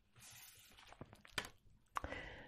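Faint sliding and light taps of a tarot card being drawn across a wooden table and turned over, with a few soft clicks in the second half.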